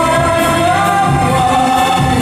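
A man sings a Vietnamese pop ballad into a microphone, holding one long note over electronic keyboard accompaniment, amplified in a large hall.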